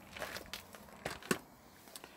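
A few faint crunching footsteps on gravel and a step up into a caravan doorway, heard as short scattered knocks, the loudest about a second and a quarter in.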